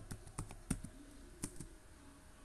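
Computer keyboard typing: about six separate keystrokes at an uneven pace as a word is typed.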